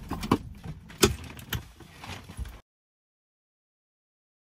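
A handful of sharp clicks and knocks from the key and controls at the dashboard of a 1985 Mercedes-Benz 380SE, the loudest about a second in, over a low hum. The sound cuts off abruptly after about two and a half seconds.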